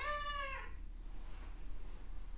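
A long-haired cat meowing once: a single drawn-out call that rises and then falls in pitch, fading out within the first second.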